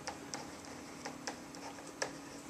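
Stylus pen tapping and scraping on an interactive whiteboard as handwriting goes on, light ticks about three a second over a steady low hum.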